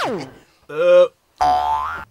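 A comic 'boing' sound effect, a quick falling whistle-like glide, plays right at the start. It is followed by two short pitched sounds; the first of these is the loudest, and the second rises in pitch at its end.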